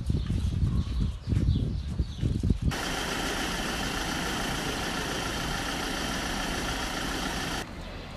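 Gusty wind rumble buffeting a phone microphone over a crowd. About two and a half seconds in it cuts abruptly to a steady, even running noise of a parked vehicle idling, which stops abruptly near the end.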